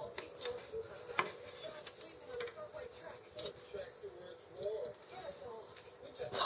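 Scattered light clicks and taps, irregularly spaced, from small plastic model-kit parts and hobby tools being handled during assembly.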